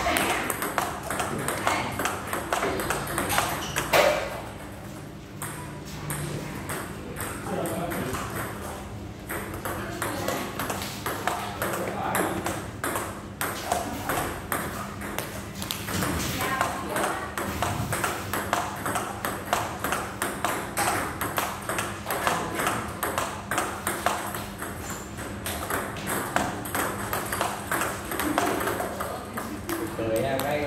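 Table tennis ball going back and forth in a steady forehand rally: a quick, regular run of light ticks as the ball strikes the rubber bats and bounces on the table, with a louder knock about four seconds in.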